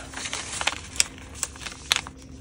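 Sheet of plain copy paper being folded up and creased by hand: soft rustling with two sharp ticks, one about a second in and one near the end.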